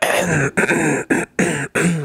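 A man's voice making wordless vocal sounds, in several short spells broken by brief silences.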